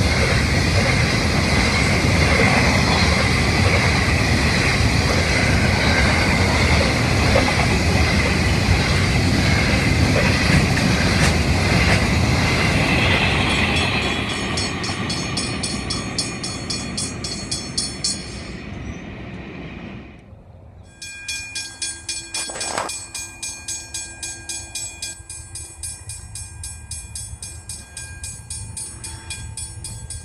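Freight train of grain hopper wagons rolling past close by, a loud steady rumble with a high ring over it, fading as the train draws away. After a sudden drop, level crossing warning bells ring in an even beat of about two strokes a second.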